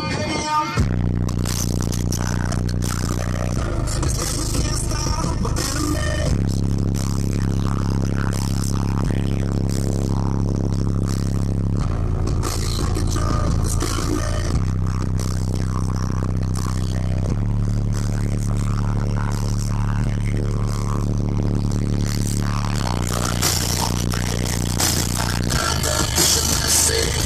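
Bass-heavy music played loud through a car audio system of twelve 12-inch subwoofers in a fourth-order bandpass enclosure. Deep, sustained bass notes change every few seconds.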